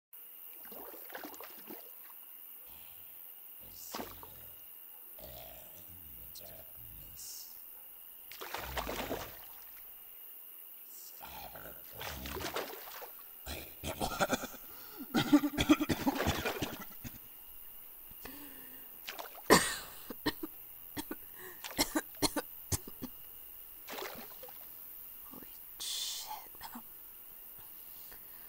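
Throaty, gurgling croaks and wet vocal noises from a person voicing a swamp monster, loudest and most crowded about halfway through, with water splashing and sharp wet pops. A faint, steady high chirr of night insects runs underneath.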